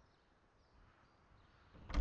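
Faint steady background hiss, then near the end a sudden loud swell that peaks sharply: a horror film's sound-effect stinger breaking in.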